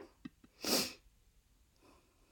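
A woman's short, sharp breath close to the microphone, about two-thirds of a second in, after a faint click.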